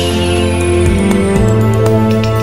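Theme music for a news programme's title bumper: held synthesized chords with a high sweep gliding slowly downward and a few light ticking accents.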